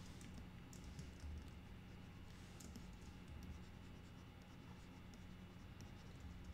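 Faint scratching and tapping of a pen stylus on a drawing tablet, with scattered light key clicks, over a low steady hum.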